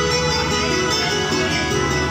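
Acoustic guitar music from an informal jam session.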